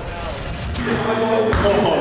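A mini basketball shot hitting the hoop once, a sharp knock about one and a half seconds in, among a group of young men's voices reacting.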